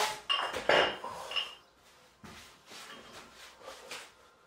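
Clinks and knocks of the metal plates on a pair of small adjustable dumbbells being handled, a few sharp strikes with a brief ring in the first second and a half, then softer shuffling movement.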